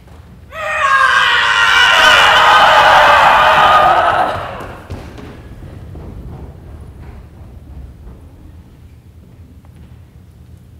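A loud battle cry from several voices, held for about four seconds, starting about half a second in and sagging in pitch at the end. Faint thuds of running feet follow.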